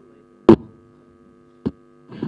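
Steady, low electrical mains hum in the microphone and PA feed. It is broken by two short, sharp knocks: a loud one about half a second in and a fainter one near the end.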